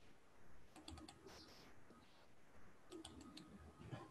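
Faint computer keyboard typing: two short runs of quick keystrokes, one about a second in and one about three seconds in.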